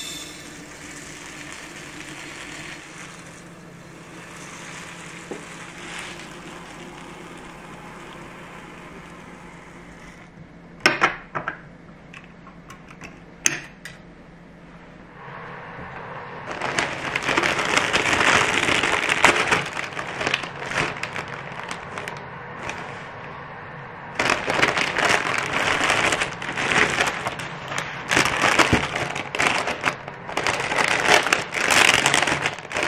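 Glutinous rice pouring from a plastic bottle into a glass jar as a steady soft hiss, then two short sharp clicks. From about 16 s, a plastic mailer bag is loudly crinkled and torn open, followed by plastic wrap crinkling near the end.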